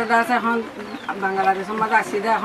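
An elderly woman speaking in a language other than English, her voice drawn out in long, level-pitched phrases.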